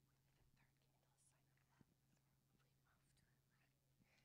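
Near silence: room tone with a steady low hum and faint scattered rustles or whispers, and one small click about two seconds in.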